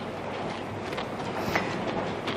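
Steady background hiss of a lecture room between sentences, with a faint click about one and a half seconds in.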